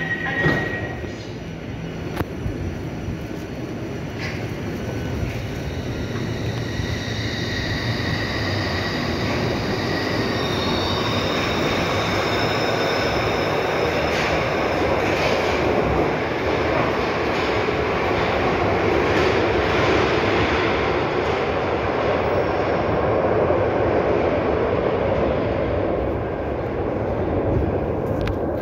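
New Glasgow Subway train departing into the tunnel: a steady rumble of wheels on rail with high-pitched wheel squeal and short gliding screeches in the middle, the noise growing slowly louder as it carries back from the tunnel.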